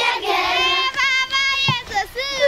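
Schoolchildren's high voices singing and shouting together during a game, with a long held high note in the second half.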